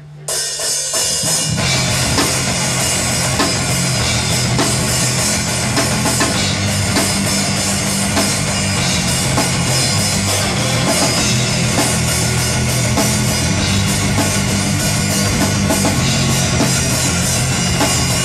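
Live rock band playing: two electric guitars, bass guitar and drum kit start a song together right away, with the bass and full band filling in about a second and a half in, then playing on steadily and loud with no vocals.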